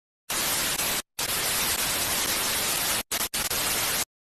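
Television static hiss used as a glitch sound effect, cutting in and out. It starts a moment in, with a short dropout after about a second and two brief dropouts near the end.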